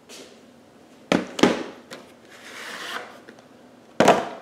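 Plastic VHS cassettes and cases being handled: two sharp clacks about a second in, a quarter second apart, then a longer scraping rustle, and another clack near the end.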